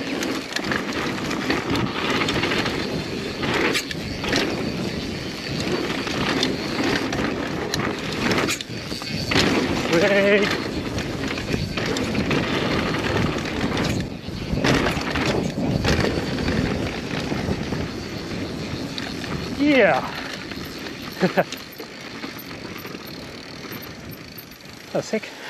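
Mountain bike riding fast down a dirt trail: continuous tyre and drivetrain noise with frequent knocks and rattles over bumps. A short wavering vocal sound comes about ten seconds in, and a brief falling exclamation near twenty seconds.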